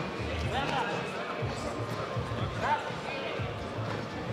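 Arena ambience: distant voices and background music, with a low thump repeating about twice a second.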